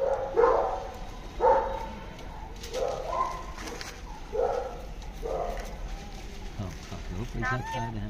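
A dog barking repeatedly, short barks roughly once a second, fading out after about five seconds.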